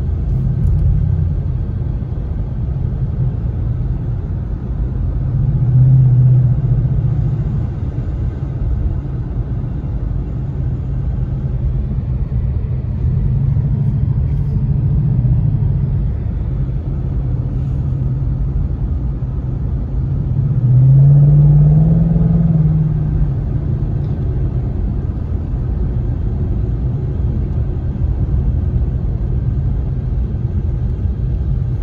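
A 2016 Shelby GT-H's V8 engine heard from inside the cabin, a steady low rumble while driving. It rises in pitch and loudness with three bursts of acceleration, about six, fourteen and twenty-one seconds in; the last is the loudest.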